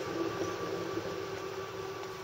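Land Rover Defender's engine running steadily at low revs, heard at a distance.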